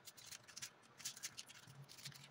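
Faint, irregular crinkling and scratching of plastic snack wrappers and wooden sticks as hands handle chocolate bars set in a styrofoam block.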